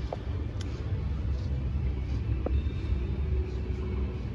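Steady low rumble of indoor background noise, with a couple of faint clicks.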